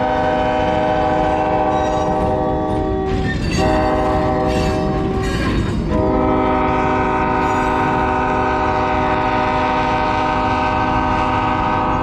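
Diesel locomotive's air horn sounding a steady chord in three blasts: one ending about three seconds in, a short one, then a long one from about six seconds in that holds to the end. Under the horn, the train of tank cars rumbles by on the rails.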